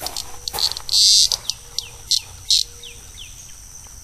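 Male cicada buzzing from its tymbals in short, separate high bursts as it is pulled off the fingers and let go; the loudest burst comes about a second in, and the last about halfway through. A few faint falling chirps follow shortly after.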